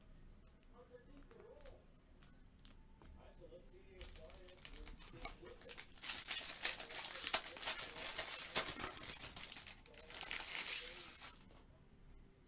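Foil wrapper of a baseball trading-card pack crinkling and tearing as it is opened by hand. It starts faintly about four seconds in, is loudest over the next five seconds, and stops shortly before the end.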